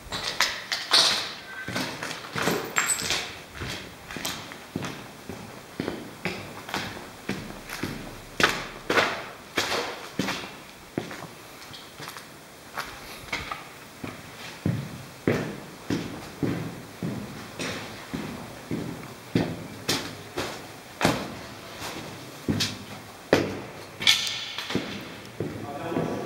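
Footsteps walking at a steady pace over a debris-strewn concrete floor in an empty building, a little over one step a second.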